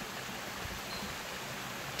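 Steady, even rush of a waterfall.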